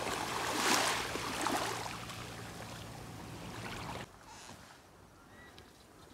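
Small waves gently washing at the shoreline of a very calm sea, with a louder swash about a second in. The sound cuts off abruptly about four seconds in, leaving only a faint background.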